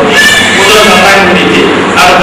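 A man speaking into a handheld microphone, his voice loud and amplified.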